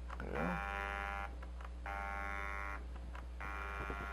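Stepper motor whining in three separate bursts of about a second each as it indexes the shaft a quarter turn per press of the run button.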